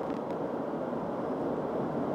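Steady drone of a car driving at speed, heard from inside the cabin: tyre and engine noise.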